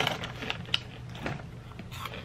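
Close-up chewing of a white cheddar puffed snack, with a few irregular light crunches between quieter mouth sounds.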